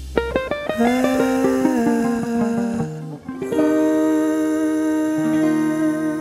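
Instrumental outro of an acoustic song: guitar plays a quick run of plucked notes, then held, ringing chords, with a short dip about halfway through.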